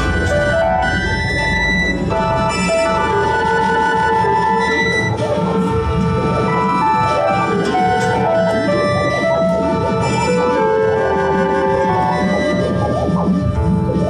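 A live band playing an instrumental passage: transverse flutes carry a melody of held notes over hand drums, with keyboard and guitar filling in.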